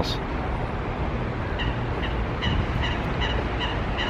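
Steady low rumble of outdoor city noise, with a faint, regular light ticking through the second half.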